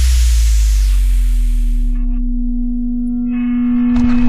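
Broadcast sound effect under a TV warning card: a loud low whoosh fades away over about two seconds, while a steady humming tone rises in and swells near the end.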